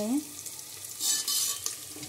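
Peanuts, onion and ginger-garlic paste sizzling in hot oil in a metal pot while a steel spatula stirs and scrapes them, with a louder burst about a second in.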